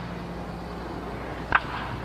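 A baseball bat hitting a pitched ball once, about one and a half seconds in: a single brief hit that sends the ball up as a high pop-up. It sounds over the steady hum and hiss of an old film soundtrack.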